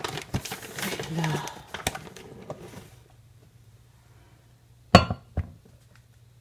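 A cup scooping flour out of a large flour bag: the bag rustles and crinkles with small clicks for the first few seconds. Then, after a quiet spell, a sharp knock near the end, followed by a lighter one, as the cup knocks against the glass measuring cup.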